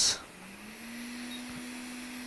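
Hot air rework station's blower starting to run: a hum comes in about a third of a second in, rises briefly in pitch, then holds steady over a soft rush of air as the nozzle heats the chip to reflow its solder balls.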